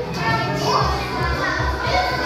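Background music with a steady beat, with children's voices chattering over it.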